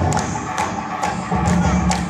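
Parai frame drums beaten with sticks by an ensemble, a run of sharp, close-spaced strokes over a steady low rumble of music.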